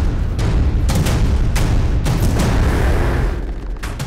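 Battle sound effects: explosions and gunshots, several sharp blasts over a heavy, continuous low rumble, mixed with dramatic music.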